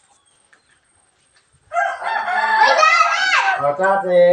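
A rooster crowing once, about halfway in: one call of about two seconds that ends with a falling pitch.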